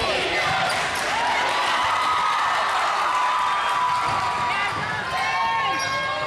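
Crowd of fans shouting in a school gymnasium, with long held yells in the middle, over a basketball being dribbled on the hardwood court.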